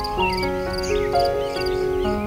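Slow, soothing piano music with notes and chords changing every half second or so, over ambient birdsong: short chirps and small repeated trills.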